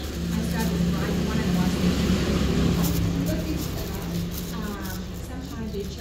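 A motor vehicle's engine running nearby: a steady low hum that swells over the first second or two and then slowly fades, with faint voices in the background.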